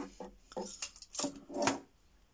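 Several light clicks and knocks of small hard objects being handled and set down, the loudest about three-quarters of the way through.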